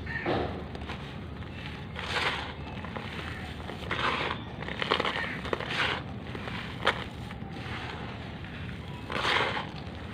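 Crushed charcoal granules crunching and rustling as hands scoop, squeeze and crumble handfuls back onto the pile, in about seven separate bursts.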